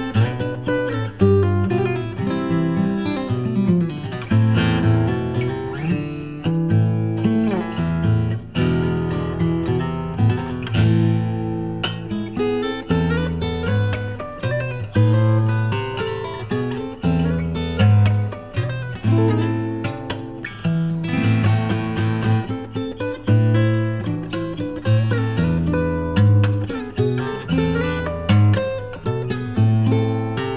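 Solo acoustic guitar played fingerstyle, with melody notes and a bass line plucked together on the one instrument.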